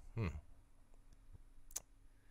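A brief murmured 'hmm' from a man, then a single sharp click near the end in an otherwise quiet room.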